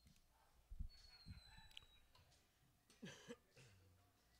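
Near silence, broken by a faint low thump about a second in and a short, faint vocal sound with a rising pitch about three seconds in.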